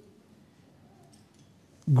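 A short pause in a man's speech: quiet room tone with a few faint clicks about a second in, then his voice returns near the end.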